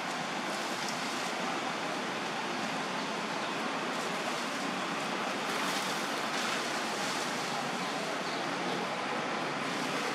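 Steady rushing hiss with no distinct calls, knocks or other events.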